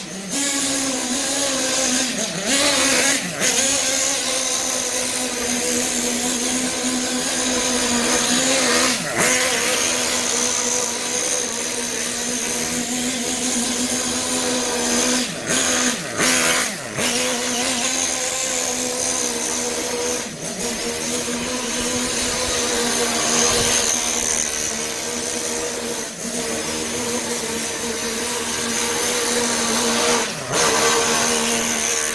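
Kyosho FO-XX GP radio-controlled car's two-stroke nitro engine running hard on its second tank of fuel, still early in break-in, with a steady high engine note. The revs dip briefly several times as the throttle is let off, then pick back up.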